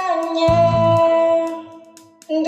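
A teenage girl singing one long held note of an Indonesian worship song, with an electric bass note under it about half a second in; the note fades out near the end.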